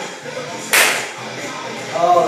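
A single sharp slap about three-quarters of a second in, over background music.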